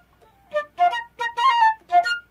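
Concert flute playing a short passage of quick, detached notes, the same piece just demonstrated on piccolo, sounding an octave lower and deeper.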